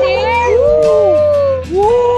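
Several voices letting out long, drawn-out whoops that overlap, each rising and falling in pitch, with a short dip about one and a half seconds in before the next call starts.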